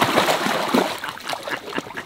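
Swimming-pool water splashing and sloshing as a person and a dog move in it, loudest in the first second and then dying down.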